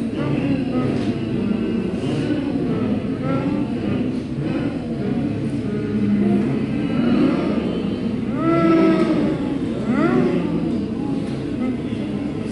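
A group of voices sounding together as a graphic score is traced on the board: low, overlapping held tones that slide up and down in pitch, with a few swooping rising glides in the second half.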